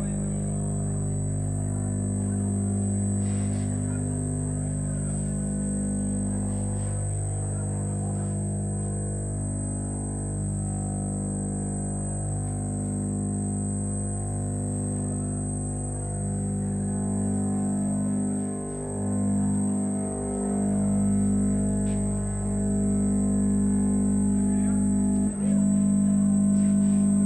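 Experimental electronic drone music: a dense stack of sustained low tones that shift in pitch every couple of seconds, over a steady high whine. It briefly cuts out just before the end and comes back louder.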